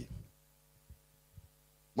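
A man's spoken word trails off. It is followed by near silence holding a low, steady electrical hum and two faint soft thumps, about a second in and again about half a second later.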